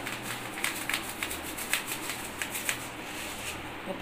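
Sesame seeds being scooped and handled by hand: a run of small, irregular ticks and rustles.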